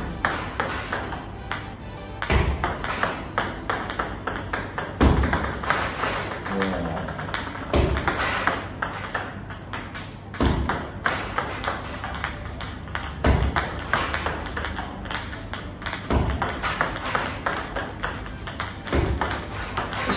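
Table tennis balls clicking off a racket and bouncing on the table during repeated no-spin serves, a heavier stroke about every three seconds.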